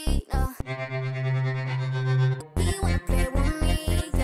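Electronic beat in progress: punchy low kicks about four a second with synth notes, breaking off about half a second in for a held synthesizer note of about two seconds, then the beat comes back in.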